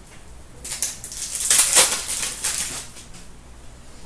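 A 2015-16 Fleer Showcase hockey card pack's wrapper being torn open and crinkled: a burst of crinkling starting just under a second in and lasting about two seconds.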